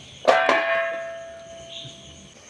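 A stainless steel plate set over a kadai as a lid knocks down twice in quick succession and rings like a bell, the metallic ring fading away over about a second and a half.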